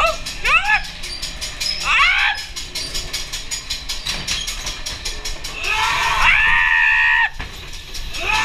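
Screams and shrieks on a dark ghost-train ride: short rising-and-falling shrieks near the start and about two seconds in, then one long high scream that cuts off abruptly near the end, over a fast, even clicking.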